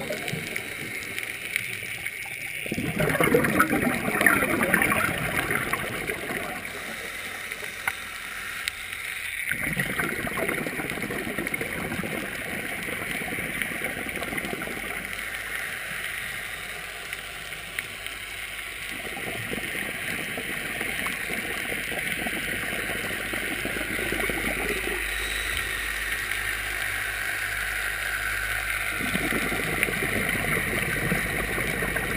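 Scuba diver's exhaled air bubbling out of a regulator underwater, in three long gurgling bursts several seconds apart with quieter stretches between them, over a steady hiss.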